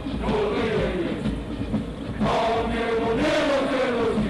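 A large body of marching troops chanting in unison, long drawn-out notes that slide downward in pitch, over a steady low rumble.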